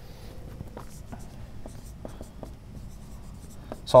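Dry-erase marker writing on a whiteboard: a quiet run of short, irregular scratching strokes as an arrow and a word are written.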